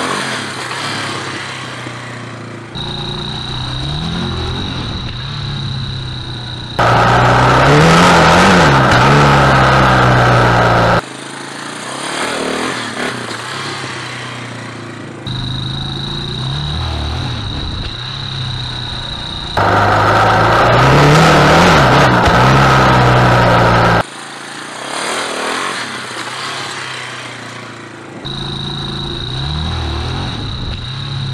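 Yamaha Warrior 350 quad's single-cylinder four-stroke engine revving up and down repeatedly under throttle, in a run of cut-together takes. There are two louder stretches, about a third of the way in and again after the middle, where the revs climb and fall steeply.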